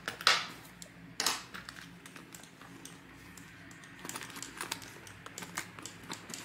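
Small items being handled and pushed into a leather bucket bag by hand: two brief rustling swishes about a second apart near the start, then a run of light clicks and taps as things knock against each other inside the bag.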